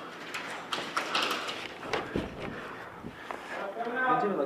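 Indistinct, unintelligible voices of players with scattered, irregular clicks and knocks from movement and gear.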